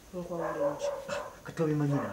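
A person's voice making two drawn-out vocal sounds without clear words, one early and one near the end.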